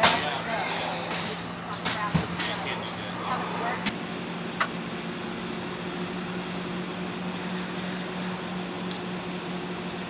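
Faint voices and a few sharp clicks in the first four seconds, then a steady low hum.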